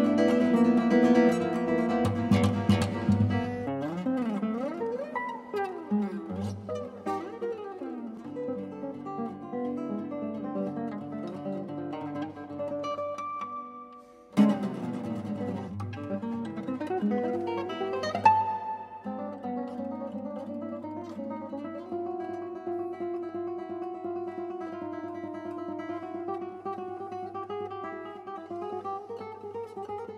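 Solo nylon-string classical guitar playing: loud ringing chords, then sliding glissando notes. About fourteen seconds in there is a short pause and a sudden loud struck chord, a quick swept chord follows a few seconds later, and quieter sustained notes follow.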